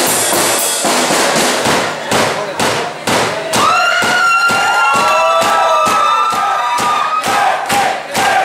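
Live drum kit solo: separate heavy hits on drums and cymbals. From about halfway through, people in the crowd yell and cheer over the hits for several seconds.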